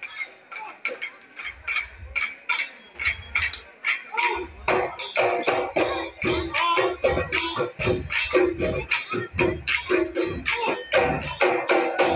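Live Bihu music: dhol drums beating a fast rhythm with small cymbals clinking. Women's singing into microphones comes in about four seconds in, over the drumming.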